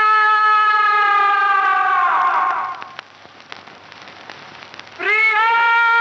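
A long held musical note, steady and then sagging in pitch and fading a couple of seconds in. After a lull with faint crackling, another held note starts with a short upward scoop near the end.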